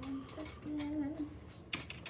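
Faint, scattered light clicks and taps, with a small cluster of them near the end.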